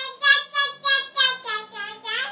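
A toddler girl's high-pitched voice in a quick, sing-song run of short syllables, about seven in two seconds.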